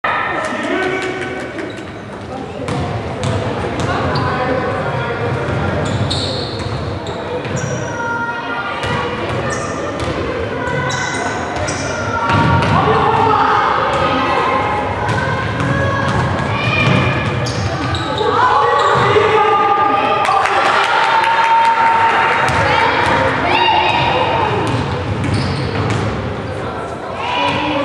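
Basketball game sounds in a large sports hall: the ball repeatedly bouncing and thudding on the hardwood court while players and spectators call out, all echoing in the hall.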